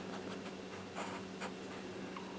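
Bic felt-tip marker rubbing on paper in a series of short, faint strokes as it shades in color.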